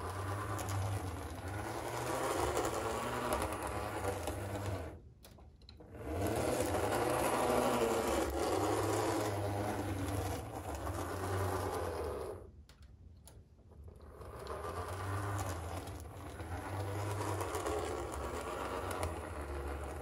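HO-scale Bowser PCC streetcar running along the layout track, its small motor and freshly rebuilt gear drive, which had been seized, giving a steady mechanical whir. The sound drops nearly to silence twice, about five and thirteen seconds in.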